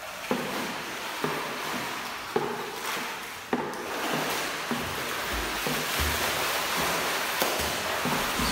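Pool water splashing and churning as swimmers stroke through it, with a few sharper splashes in the first half and a steadier wash of splashing later.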